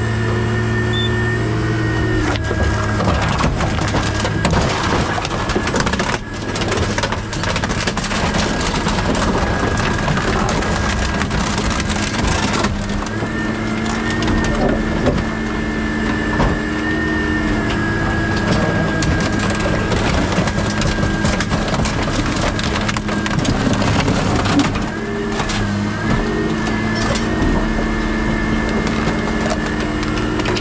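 Car body being crushed down into a scrap trailer by a material handler's grapple: continuous crunching and cracking of sheet metal over the steady hum of the machine's engine and hydraulics, whose pitch dips briefly a couple of times.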